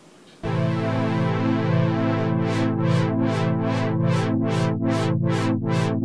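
Roland Boutique JU-06 synthesizer sounding a sustained patch about half a second in, with its LFO sweeping the filter. From about two seconds in, the tone brightens and darkens in an even wobble, about two and a half times a second.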